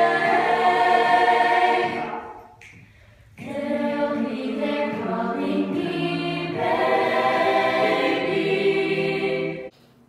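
A mixed group of young voices singing a cappella in harmony, unaccompanied. A held chord fades away about two seconds in, the singing resumes after a short break, and it cuts off suddenly just before the end.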